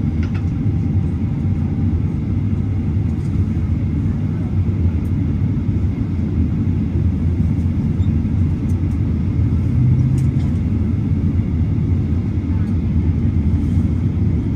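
Steady low rumble inside an airliner's cabin as it taxis to the gate after landing, engines running at low power.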